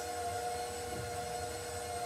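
KitchenAid 600-series bowl-lift stand mixer running at a steady speed, its motor humming evenly as it beats a bowl of frosting.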